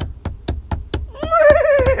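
A Muppet cow's voiced "moo": one long call starting a little over a second in, sliding slightly down in pitch. Under it runs an even, rapid clicking, about five or six clicks a second.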